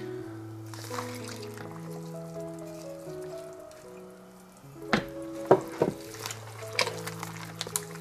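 Yeasted milk poured from a mug into a plastic bowl and squished into wet flour dough by hand, with a few sharp clicks and knocks about five seconds in, the loudest events. Background music with slow held notes plays throughout.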